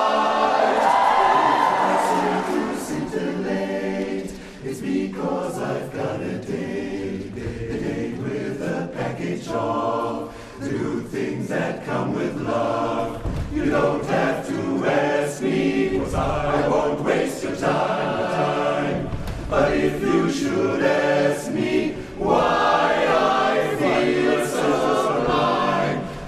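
Men's barbershop chorus singing a cappella in close harmony, the chords shifting throughout with a brief drop in loudness about four seconds in.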